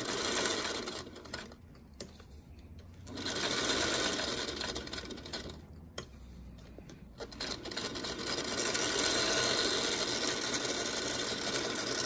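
Vintage Singer sewing machine stitching along the curved outline of an appliqué shape. It runs in three spells, stopping briefly twice, with a sharp click at the second stop.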